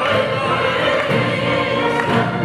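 Opera singing: a male and a female singer in a duet, with more voices joining in like a chorus, sustained and steady in level.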